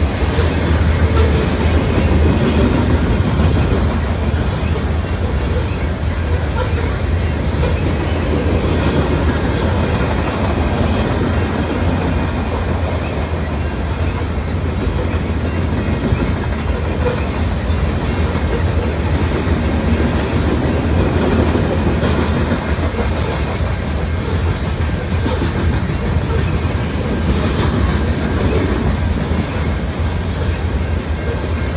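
Freight train of covered hopper cars rolling steadily past: a continuous low rumble of steel wheels on rail, with occasional clicks as wheels cross rail joints.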